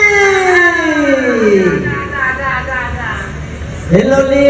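A performer's long sung call through the stage loudspeakers, its pitch sliding steadily down over about two seconds until it fades, followed by weaker shifting vocal tones and a new call swooping up just before the end.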